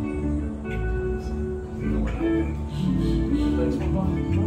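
Several guitars and a bass guitar playing a song together, low bass notes under strummed and picked guitar notes.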